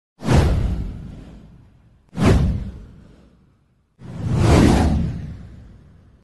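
Three whoosh sound effects of an animated title intro. The first two hit suddenly about two seconds apart and fade away over a second or so; the third swells up more gradually about four seconds in and fades out.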